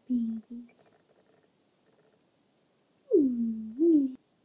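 A dog howling in the background: two short howls right at the start, then a longer one near the end that slides down in pitch and then rises again.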